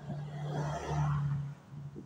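A car driving past close by: a steady low engine hum with tyre and road noise that grows to its loudest about a second in and drops away about a second and a half in.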